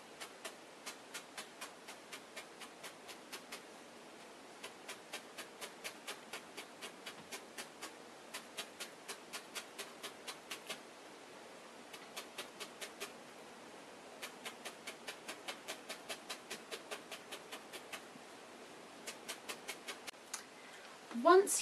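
A felting needle repeatedly jabbed through wool fleece into a blue felt heart, securing a fleece layer: a steady run of faint sharp ticks, about three to four a second, with a few short pauses.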